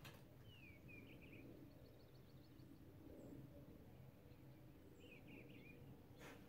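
Near silence: faint outdoor ambience with a few soft bird chirps, once about half a second in and again near the end.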